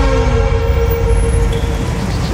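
Dramatic background score: a single held note over a deep bass rumble, fading out near the end.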